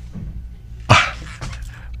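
A single short, breathy vocal sound about a second in, over a steady low hum.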